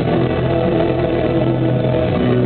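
Live rock band music recorded from the crowd in poor quality: steady held notes over a strong low bass, with no break in the playing.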